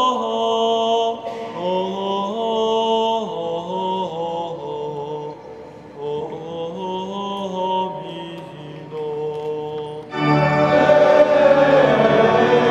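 Slow liturgical chant in long held notes that step from one pitch to the next. About ten seconds in, the music swells into a louder, fuller passage.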